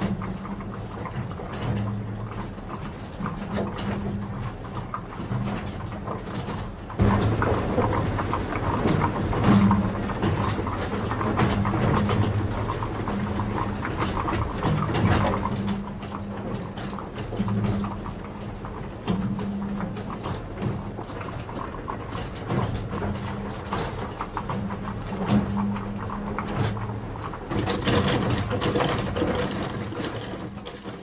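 Water-powered corn mill's gearing running: the cogged spur wheel and pinions turning with a continuous clatter of meshing teeth over a low hum that swells and fades every few seconds. It gets louder about seven seconds in.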